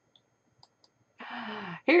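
A few faint clicks, then just over a second in a woman's short breathy sigh with a little low voice in it, followed by the start of speech.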